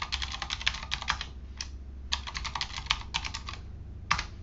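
Fast typing on a computer keyboard: two quick runs of keystrokes with a single keystroke in the short gap between them, over a low steady hum.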